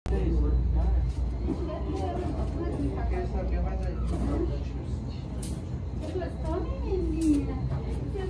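Indistinct talking in the background, no clear words, over a steady low rumble.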